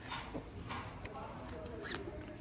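Faint voices in the background with a few soft clicks, in a quiet lull.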